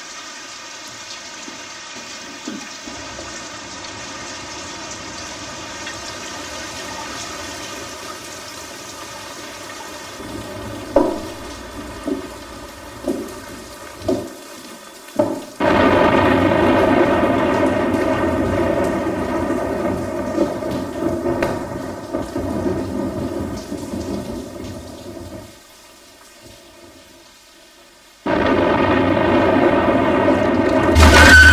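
Rain falling in a thunderstorm: a steady patter at first with a few short sharp cracks in the middle. About halfway through it turns suddenly into a much heavier downpour, which drops away for a few seconds near the end and then comes back.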